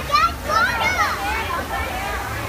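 Young children's high-pitched voices calling and squealing, loudest in the first second, over a steady low background hum of the room.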